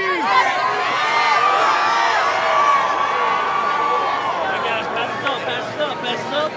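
Arena crowd chattering and shouting at close range, many voices overlapping. One long, high held note runs through the middle for about three seconds.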